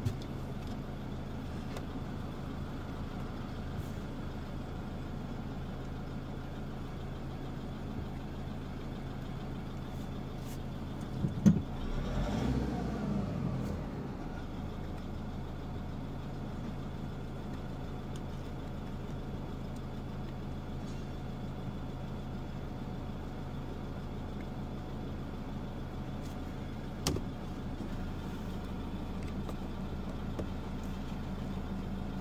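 Car engine idling steadily, heard from inside the cabin. About eleven seconds in there is a sharp knock followed by a louder rumble lasting a couple of seconds, and a single click comes near the end.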